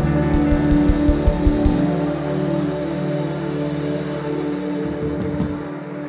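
Live worship band music: held keyboard chords, with a quick run of low drum hits in the first two seconds.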